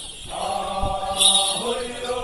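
A group of men chanting together as they dance, one long held note sung by many voices that dips in pitch near the end. A short bright burst of noise cuts in about a second in.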